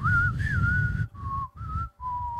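A man whistling a short tune: one long, slightly wavering note for about a second, then two shorter notes, the first lower and the second higher.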